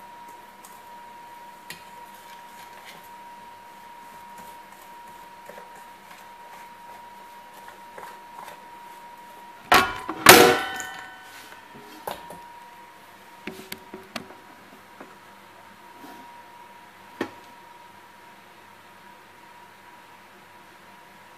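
A wire whisk tapping lightly in a stainless steel bowl of flour. About halfway through comes a loud clatter that rings briefly, then a few soft knocks, over a steady faint high-pitched whine.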